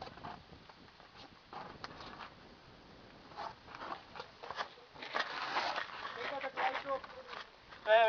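Faint, indistinct voices with scattered clicks and scrapes; the voices grow louder about five seconds in.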